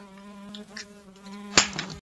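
A fly buzzing in a steady drone close to the microphone, ended by a sharp slap about one and a half seconds in as a hand swats at it.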